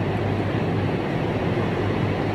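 Steady whir of ceiling fans filling a large hall, an even noise with a low constant hum underneath.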